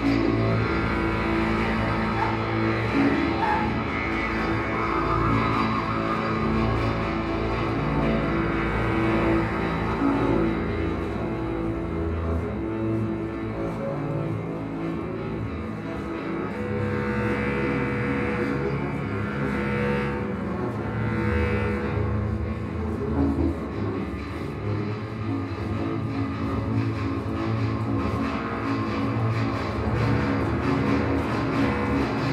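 Freely improvised ensemble music: bowed double bass, bass clarinet and harp in a dense layer of long sustained low tones, with no steady beat.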